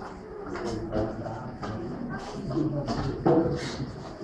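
School chairs and tables being carried and set down, with knocks and scrapes, under the chatter of children and adults.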